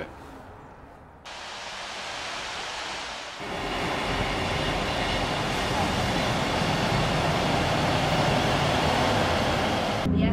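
Diesel multiple-unit passenger train pulling into a station platform: after a quiet second, a sudden rise in engine and wheel noise, stepping up again about three seconds in with a low rumble that keeps growing louder.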